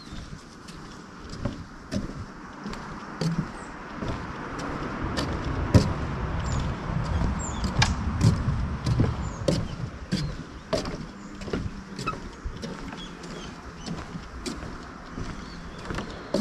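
Footsteps of someone walking along a path, a sharp step about once a second, with a low rumble swelling in the middle and fading again, and a few faint high bird chirps.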